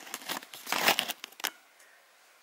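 Handling noise from a camera being set down on top of a stone wall: rustling and scraping against the microphone with a few sharper knocks, stopping about a second and a half in.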